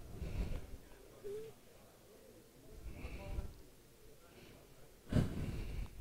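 Faint room tone with a few brief, murmured voices in the background.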